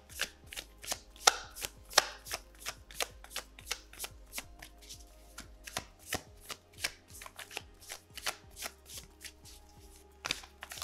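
A tarot deck being shuffled overhand by hand: small packets of cards slap down onto the deck in the other hand in a quick run of crisp clicks, about four or five a second.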